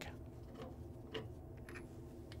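A few faint, widely spaced clicks over quiet room tone as a torque wrench is fitted to the crankshaft bolt.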